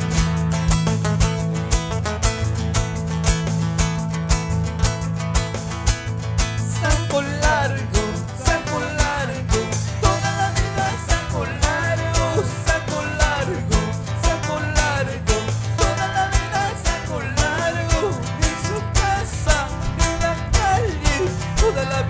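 A live band playing Andean carnaval music on acoustic-electric guitars over a sustained bass line and a steady, pulsing beat. A wavering lead melody line comes in about seven seconds in.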